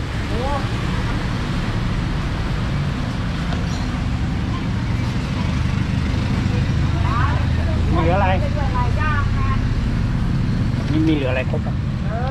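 Steady low rumble of street traffic, with people's voices speaking briefly about seven to nine seconds in and again near the end.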